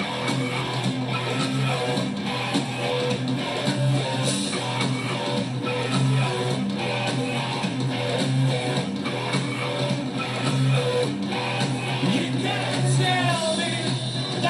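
Live rock band playing an instrumental passage with no vocals: bass guitar, guitar and drums with cymbals keeping a steady driving beat.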